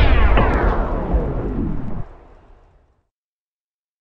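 The end of an electronic drum-and-bass track: the whole mix slides down in pitch with a deep boom and dies away over about two seconds, then cuts to silence.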